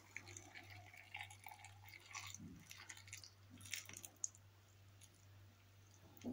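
Faint trickle of boiling water poured from a stainless-steel kettle into a glass jar packed with cucumbers, garlic and peppers, over a low steady hum.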